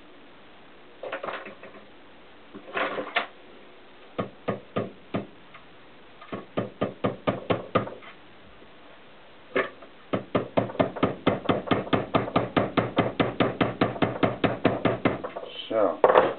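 Small hammer tapping metal on a brake-line hose fitting held in a bench vise. The sharp taps come in short scattered groups at first, then in a steady run of about four taps a second for some five seconds.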